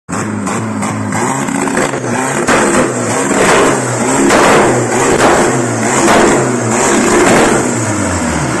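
Turbocharged VW Gol engine revved hard against the rev limiter, the noise surging and dropping back in repeated bursts about once a second.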